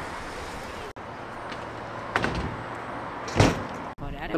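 Freestyle scooter wheels rolling on asphalt as a low steady rumble, with a sharp knock about halfway through and a louder clack near the end as the scooter takes off over the funbox.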